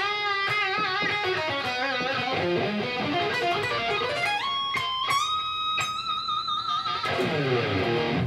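Electric guitar, tuned down a semitone, playing a fast sweep-picked diminished arpeggio run. It opens with wavering notes, climbs in quick steps about four seconds in to a long held high note with vibrato, and falls away in a descending run near the end.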